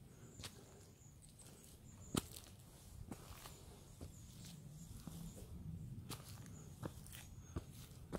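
Faint footsteps of a hiker climbing a trail of dirt, roots and stone steps strewn with dry leaves: soft, irregular steps about once a second, the sharpest about two seconds in.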